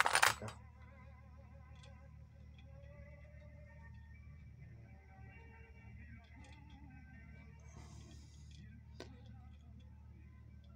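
Faint background music with wavering melodic lines over a low steady hum. A brief loud sound comes at the very start, a short scraping rustle near eight seconds and a single click about a second later, as small metal sewing-machine parts are handled.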